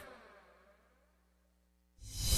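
Near silence: a brief gap of dead air with only a very faint steady hum.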